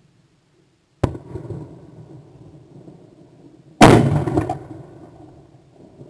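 A single shotgun shot at a skeet target, the loudest thing here, sudden and heard from right at the gun, just before four seconds in and trailing off over about a second. A sharper, quieter click comes about a second in.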